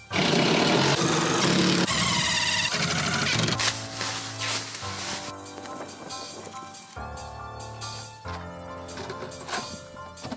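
Background music, much louder for the first three and a half seconds, then quieter.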